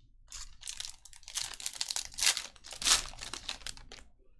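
Foil trading-card pack being torn open and its wrapper crinkled as the cards are pulled out: a run of rustles with the loudest at about two and three seconds in.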